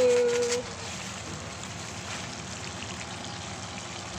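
Vegetables frying in a pan on the stove, a steady, even sizzle.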